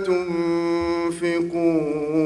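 A man chanting a Quran verse in Arabic in melodic recitation, drawing out long held, slightly wavering notes on the vowels with a brief break about a second in.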